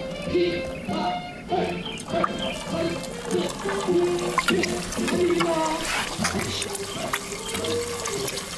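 An egg frying in a frying pan, sizzling with small crackles, under background music with a steady melody.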